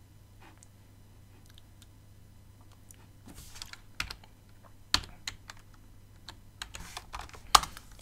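Typing on a computer keyboard: scattered keystrokes, sparse at first and coming more often from about three seconds in, with the loudest key strike near the end.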